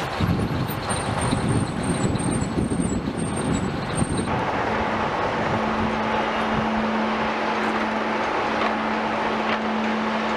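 City street traffic noise, with vehicles running and a bus. It is dense and uneven for the first four seconds. About four seconds in it changes to a steadier noise with a constant low hum.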